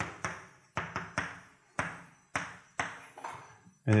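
Chalk tapping against a blackboard while writing: about ten sharp, irregular knocks, each with a short echoing tail.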